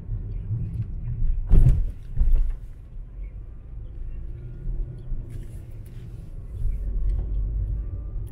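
Car driving slowly on a rough road, heard from inside the cabin: a steady low rumble of engine and tyres, with two knocks about a second and a half and two and a half seconds in, the first the loudest.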